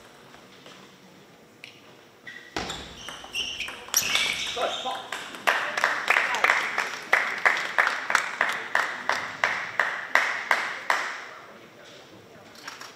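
A table tennis point ends with a player's loud shout, falling in pitch. Then evenly paced clapping follows, about three claps a second, for several seconds.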